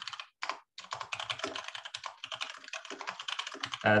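Fast typing on a computer keyboard: two separate key taps, then a dense, rapid run of keystrokes lasting about three seconds.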